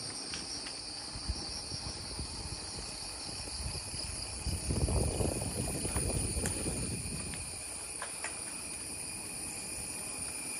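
A steady, high-pitched insect chorus of several shrill tones, heard throughout. A low rumbling noise swells and is loudest from about four and a half to seven seconds in, with a few faint ticks.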